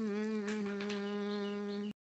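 A singer's voice holding one long, steady note, played back from a phone voice message; it cuts off suddenly just before the end.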